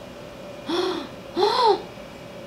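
A woman's voice making two short, breathy exclamations of delight, each rising and then falling in pitch, the second a little longer.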